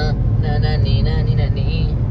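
Steady low rumble of road and engine noise inside a moving car's cabin at highway speed, with a voice talking briefly over it.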